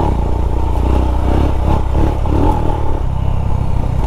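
Royal Enfield Himalayan's 411 cc single-cylinder engine running steadily while the bike is ridden along a dirt trail.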